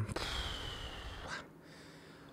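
A man's long sigh, a breath out that fades over about a second and a half, a sigh of indecision.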